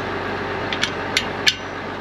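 Several short metallic clicks, about four in under a second, as a steel pin and spring R-clip are fitted into the depth-adjustment bracket of a New Holland cultivator. Under them a tractor engine idles steadily.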